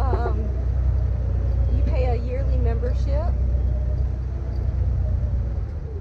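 Steady low rumble of a 4x4 vehicle driving along a dirt trail, heard from inside the cab, with brief voices over it near the start and about two to three seconds in.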